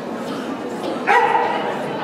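A dog barks once, sharply, about a second in, over the murmur of people talking in a large hall.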